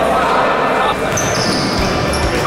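Echoing futsal-hall sound: indistinct voices and a ball bouncing on the wooden court floor.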